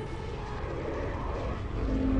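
Soundtrack music with a rumbling whoosh effect that swells through the middle, then a louder sustained chord comes in right at the end.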